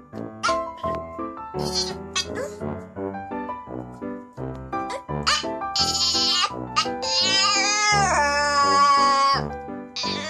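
Small dog giving short yips, then one long wavering howl near the end, the loudest sound, over background music.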